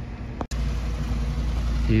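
Steady low hum of a BMW E36 328i's straight-six engine idling, starting suddenly about half a second in after a short stretch of quiet room noise.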